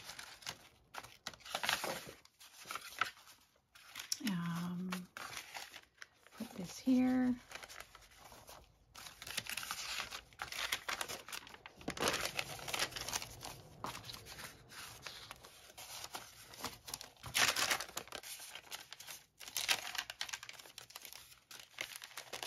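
Sheets of aged paper and newsprint rustling and crinkling as they are handled, shuffled and folded, with two short hums from a voice about four and seven seconds in.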